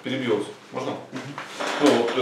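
A man's voice talking in short phrases; speech only.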